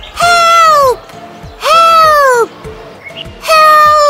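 Cartoon baby birds crying out for help in high-pitched wailing voices: three long cries, each just under a second, the first two falling away in pitch at the end and the third held steady.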